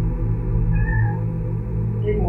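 A black-and-white house cat gives one short meow about a second in, over a steady low drone.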